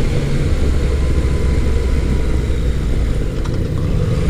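Yamaha FJ-09's 847 cc inline three-cylinder engine running steadily as the bike rides along, a low, even sound with no rise or fall in revs.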